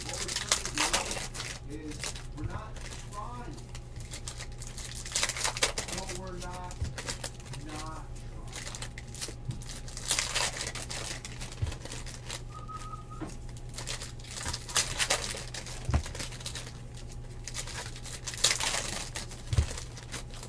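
Foil wrappers of Panini Revolution basketball card packs being torn open and crinkled by hand, in irregular bursts of crackling a few seconds apart.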